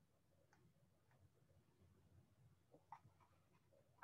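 Near silence: faint room hum with a few faint short clicks.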